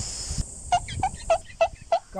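A run of short, bird-like squawks, each falling steeply in pitch, about three a second, beginning just after a sudden cut in the background hiss.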